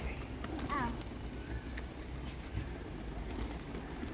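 A flock of feral pigeons flapping their wings as birds take off and land, a patter of many quick wing claps. A short high call is heard about a second in.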